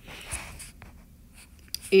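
Stylus writing on an iPad's glass screen: a soft scratching of the tip as a word is handwritten, then a few light taps, with a voice starting near the end.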